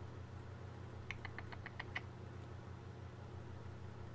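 A low, steady hum with a rapid run of about seven short, high squeaks about a second in, lasting under a second.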